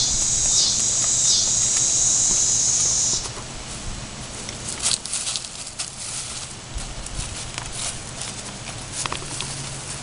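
Loud cicadas buzzing in pulses that swell about every three-quarters of a second, cutting off suddenly about three seconds in. After that there are quieter, scattered crunches and clicks of small footsteps on wood-chip mulch.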